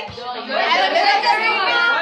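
Speech only: young people's voices talking close to the phone, with some chatter.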